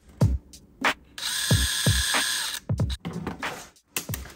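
A power drill runs steadily for about a second and a half, boring a pilot hole for a screw eye into a cast resin swimbait body. Sharp knocks of handling come before and after it.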